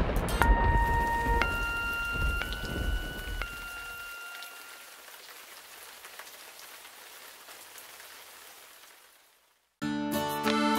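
Cartoon rain sound effect, a steady hiss of rainfall that fades out gradually over about nine seconds. A few soft held musical notes step through a short phrase in the first four seconds.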